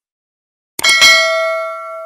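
Subscribe-animation sound effects: a couple of quick mouse clicks a little before the middle, then at once a bright notification-bell ding that rings on and slowly fades.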